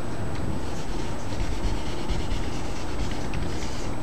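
A felt-tip marker writing on a whiteboard, giving a few faint scratchy strokes over a steady background hiss.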